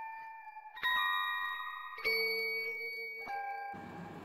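Background music of bell-like, glockenspiel-style notes, with new notes struck about a second in, at two seconds and again near the end, each ringing on. A hiss of noise comes in just before the end.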